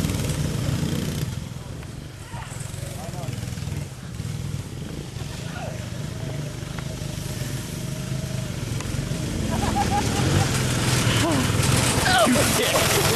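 Small petrol engines of a go-kart and a youth ATV running. The sound drops back about two seconds in and grows louder near the end as the go-kart comes toward the camera, with voices shouting over it.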